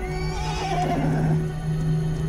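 Przewalski's horse whinnying: one call that rises and then wavers, about a second and a half long, over a steady low drone of background music.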